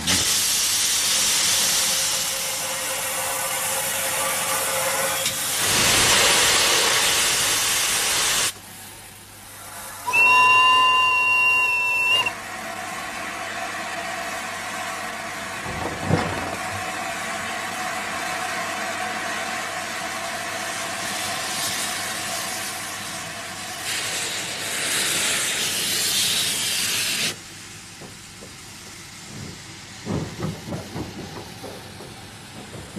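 Steam locomotive blowing steam from its open cylinder drain cocks, a loud hiss that swells and falls away. Its steam whistle sounds one steady two-second blast, then a single knock comes, and steadier hissing follows that cuts off suddenly near the end.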